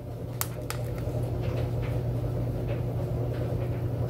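Two light clicks, then soft scraping and tapping as a fork scoops pesto from a plastic container onto a plate of zucchini noodles, over a steady low hum.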